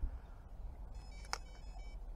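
Carp rod and reel being handled as the rod is taken up and struck at a bite: faint handling noise, a thin high whir from the reel in the second half, and one sharp click about two-thirds of the way through.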